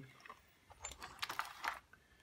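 Loose metal lathe tooling (steel tool bits and holders) clinking in a plastic tub as it is handled, a cluster of sharp clinks about a second in.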